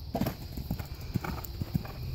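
A horse's hoofbeats on sand arena footing: the horse lands from a small crossrail jump just after the start, then canters on in a series of dull thuds.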